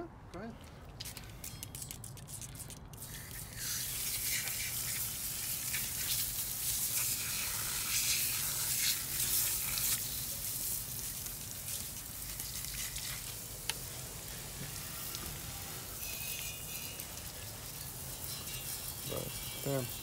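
Liquid being sprayed onto exhaust headers lying on wet pavement, degreaser from a spray bottle and water from a garden hose. A steady hissing spray begins a few seconds in, after a few sharp clicks.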